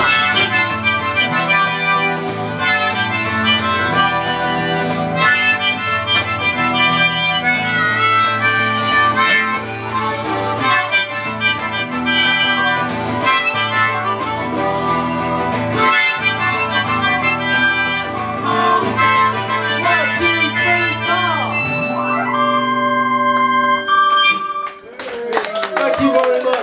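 Live band instrumental: a harmonica solo over electric guitar and synthesizer keyboard, closing on a held chord about 22 seconds in. Audience applause starts near the end.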